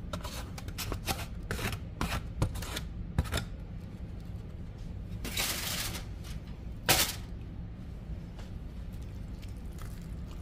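Shredded turkey meat being scraped off a plate into a bowl of cornbread dressing: a run of small clicks and scrapes of utensil on plate, a longer scrape about five seconds in, and a sharp knock near seven seconds, over a steady low hum.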